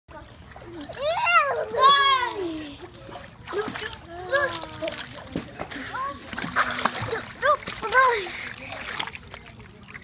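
A young child's high voice calling out several times, loudest in the first couple of seconds, over water splashing as the child kicks and paddles in a swimming pool.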